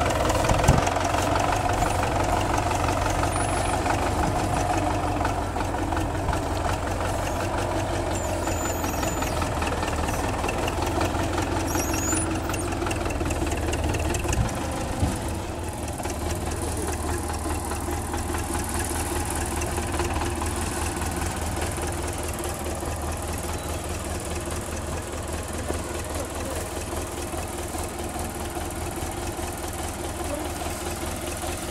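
Wheeled front-loader tractor's diesel engine running steadily at low revs, with a few faint bird chirps over it.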